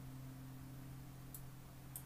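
Quiet room tone with a steady low electrical hum, and two faint short clicks in the second half.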